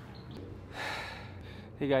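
A man drawing a short, breathy intake of breath about a second in, just before he says "Hey" near the end.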